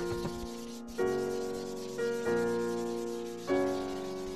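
Slow piano music, a new chord struck about once a second and left to ring and fade. Under it, a soft rubbing of graphite being blended by hand on drawing paper.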